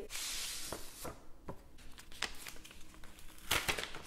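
Paper envelope rustling and crinkling as it is handled and the card inside is drawn out: a longer sliding rustle at first, then small scattered crackles of paper.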